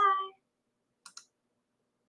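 The end of a spoken 'bye', then dead silence broken by two quick clicks, a tenth of a second apart, about a second in.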